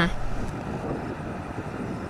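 Steady outdoor background noise of a field recording, with no clear pitched or rhythmic sound in it, easing slightly toward the end.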